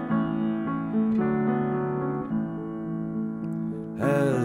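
Solo piano playing slow, sustained chords that change a few times, with no singing.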